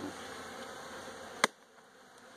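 Honeybees buzzing around an open hive, a soft steady hum. About one and a half seconds in there is a single sharp click, after which the sound drops almost to silence.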